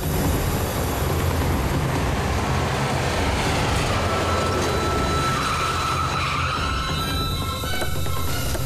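Toyota Innova driving up and pulling in: a loud, steady rush of engine and road noise with a low rumble, and a high whine that swells about five seconds in and then eases.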